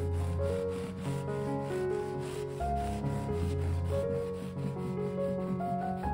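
A knife sawing through the crust and soft crumb of a sesame-seed burger bun, a steady rasp of about four strokes a second. Background music plays underneath.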